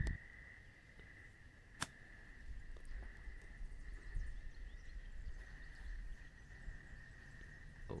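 Quiet open-air ambience: low wind rumble on the microphone under a steady, faint high-pitched whine, with one sharp click about two seconds in.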